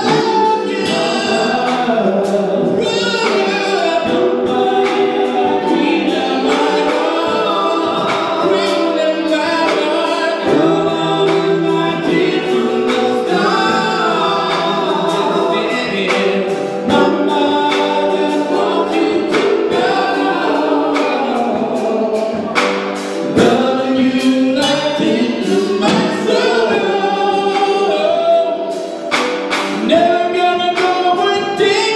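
Gospel singing by a group of men on microphones, several voices together in a continuous song, with frequent sharp percussive hits through it.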